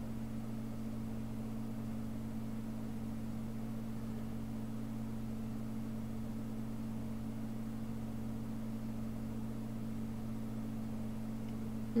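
Steady low hum over a faint hiss: room tone with no voices or events.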